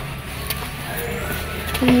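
A steady low hum with a few faint clicks. A girl's voice calls out near the end.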